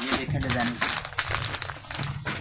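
Clear plastic packaging of a boxed ladies' suit crinkling in quick, irregular crackles as it is pulled off a shelf and handled.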